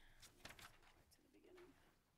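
Near silence, with faint rustles and ticks of paper sheets being handled and turned near a microphone.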